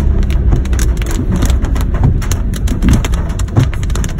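Heavy rain drumming on a moving car's roof and windshield, a dense, irregular patter over the low rumble of the car on a wet road.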